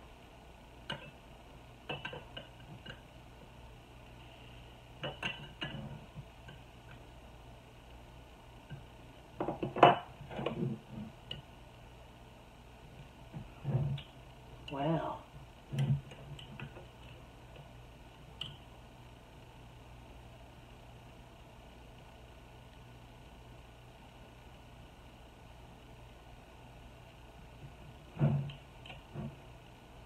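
Metal utensils (a butter knife and a metal jar wrench) clicking, knocking and scraping against a glass canning jar and its vintage glass lid while the tightly sealed lid is pried at. The knocks are scattered, with the loudest clatter about ten seconds in and a few more knocks near the end.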